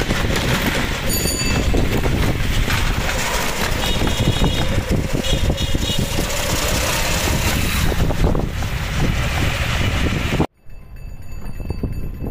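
Loud, steady rumble and rushing noise of riding in a moving vehicle. About ten and a half seconds in it cuts off abruptly to quieter street sound.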